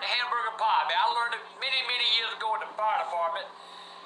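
A man talking, over a steady low hum; the talk stops about three and a half seconds in.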